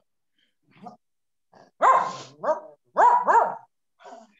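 A dog barking, a short run of about four barks starting about two seconds in, the last two in quick succession, heard through a participant's microphone on a video call.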